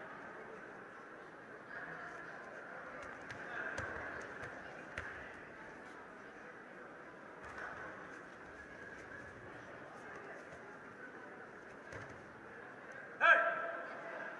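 Sports-hall crowd murmur with distant voices and a few faint knocks. Near the end, a single short, loud shout rings out over the hall.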